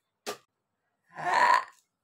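A single sharp click, then one short, rough burp lasting under a second.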